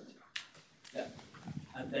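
Faint, indistinct off-microphone speech in a lecture hall, with a single sharp click about a third of a second in.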